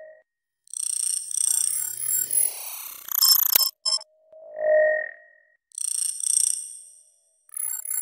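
Electronic sci-fi interface sound effects: clusters of high digital chirps and blips with sweeping tones, cut off by a sharp click. About five seconds in there is a single rounded beep-like tone that swells and fades, followed by more high chirping data sounds.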